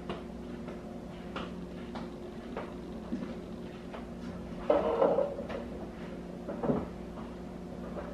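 Wooden furniture handling in a room: a chair scraped out from a dining table about five seconds in, then a low bump as someone sits down. A steady low hum runs underneath.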